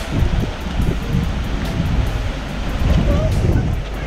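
Ocean surge washing in and out of a hole in the shoreline lava rock, under steady wind buffeting the microphone.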